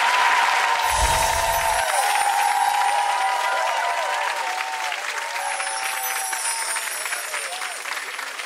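Studio audience applauding, a dense steady wash of clapping, with a low thump about a second in.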